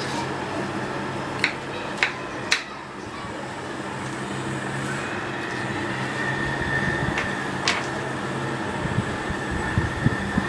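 A steady low mechanical hum, like a kitchen fan running, with a few sharp taps of a knife on a wooden chopping board: three close together about two seconds in and two more later.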